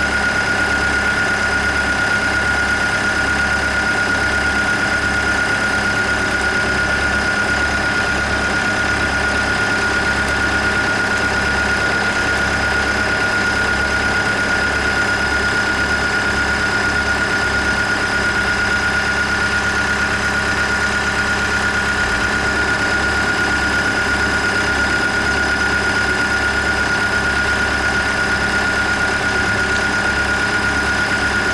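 Tracked excavator's diesel engine running steadily as the machine crawls slowly along, with a constant high whine over the low rumble.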